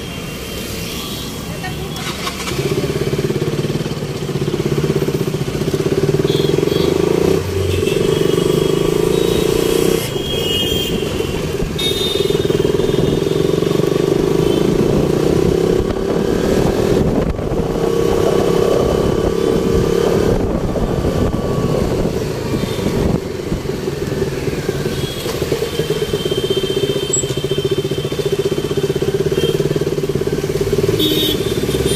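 Busy street traffic: the running engines of cars and motorbikes, with several short horn blasts.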